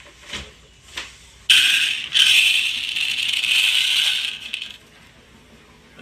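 A loud rattling, rustling clatter of about three seconds, starting a second and a half in, from hands rummaging in a cardboard box; two light knocks come before it.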